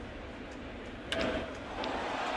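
Ballpark crowd noise with a single sharp crack of a wooden baseball bat hitting the pitch about a second in, a home-run swing, followed by the crowd growing louder.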